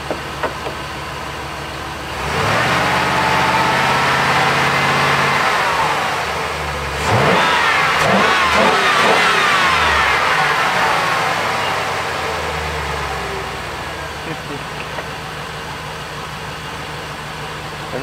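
2004 Chevy Express engine idling, then revved up twice, each rev rising and settling back to idle, while a battery tester's charging-system test checks the alternator's output under load.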